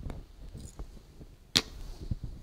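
Scattered small knocks and rustles of someone handling things and moving at an altar table, then one sharp click about one and a half seconds in.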